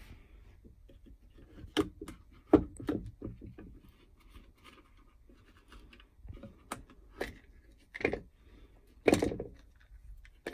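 Sharp clicks and knocks with light scraping from handling and unscrewing a plastic-and-metal quick-release bar clamp as its housing cover is taken off, the loudest knock about two and a half seconds in.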